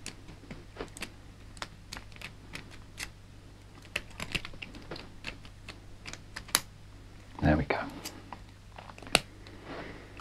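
Small metallic clicks and scrapes of a pick tool being worked in the keyway of a small dimple-keyed TSA padlock, an attempt to rake it open. The clicks come irregularly throughout, with a louder burst about seven and a half seconds in.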